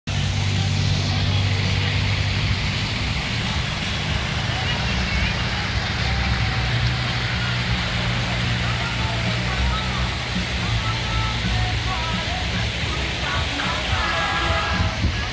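Water rushing steadily down an artificial rock waterfall into a stream, over a steady low rumble.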